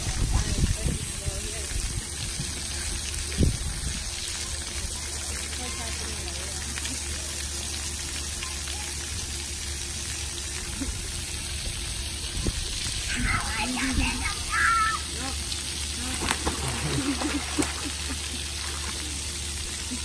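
Steady hiss of splash-pad water jets spraying onto the deck, with splashing as a child wades out of the pool near the start. Children's high voices and a laugh come in about two-thirds of the way through.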